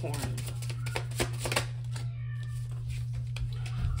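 Tarot cards being handled and drawn from the deck: a quick run of light clicks and flicks in the first second and a half, a few more near the end, over a steady low hum.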